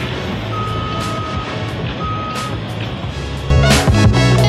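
Heavy construction machinery running at a building site, with an electronic warning beeper sounding twice: a long beep about a second in, then a shorter one. Loud music comes in near the end.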